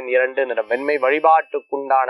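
Speech only: a voice talking steadily in Tamil, with a brief pause about three-quarters of the way through.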